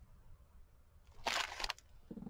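Paper page crinkling as a paint-covered hand is peeled off it after pressing a handprint: one short rustle of about half a second, a little past the middle.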